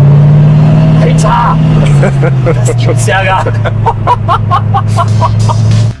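Koenigsegg Regera's twin-turbo V8 running at a steady low pitch, heard from the open cockpit, its pitch stepping down a little about two seconds in. A man laughs in short repeated bursts over it in the second half.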